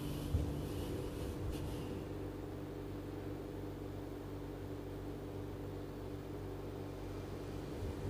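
Steady low background hum of a quiet small room, with a single faint tap just after the start.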